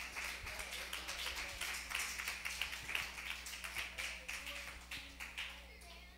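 Congregation clapping, a dense patter of many hands that thins and dies away near the end.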